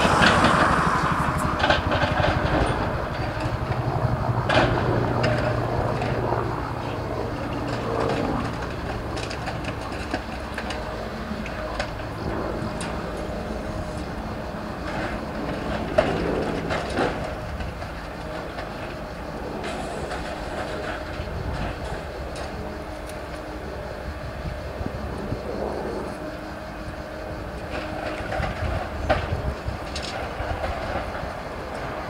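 Scrapyard demolition of a railway locomotive: excavators' diesel engines running while their grapples tear at the metal body. There are irregular metallic clanks and crunches throughout, one sharper bang about halfway through.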